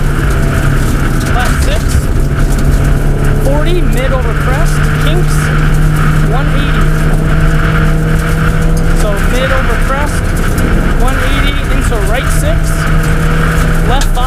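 Subaru Impreza WRX STI rally car's turbocharged flat-four engine running hard at a steady pitch for most of the stretch, with a change near the end, over heavy gravel and tyre noise at stage speed.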